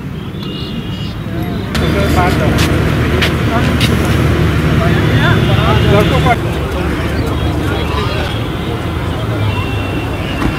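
Outdoor chatter of several people talking at once, with the steady hum of an engine running close by. The engine hum is strongest from about two seconds in until about six seconds in, then eases.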